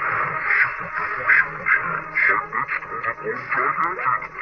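Cartoon trailer soundtrack, a character voice over music, played at an altered speed through a screen's speaker. It sounds thin and radio-like, and the words cannot be made out.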